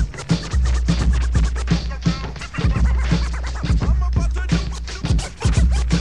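Hip hop beat with turntable scratching in place of rapping: a deep bass line and regular drum hits under a record being scratched back and forth. The bass drops out briefly near the start and again about five seconds in.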